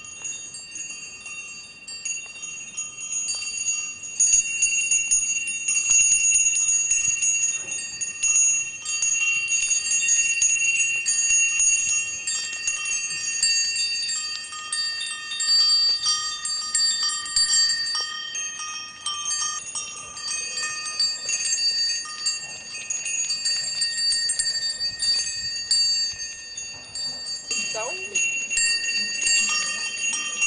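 Goat bells jingling continuously as a herd of goats trots along a gravel track. The ringing grows louder over the first few seconds as the goats come closer.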